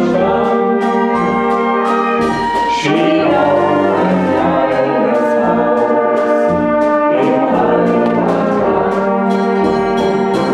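Brass band playing a song with a steady beat, with a man and a woman singing the melody as a duet through microphones.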